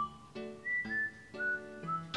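Light background music: a whistled melody stepping downward over plucked guitar notes.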